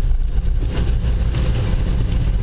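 Car driving on a wet road, heard from inside the cabin: a steady low engine and road rumble with the hiss of tyres on wet tarmac.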